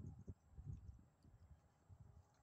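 Near silence: faint outdoor background with a low rumble that fades during the first second.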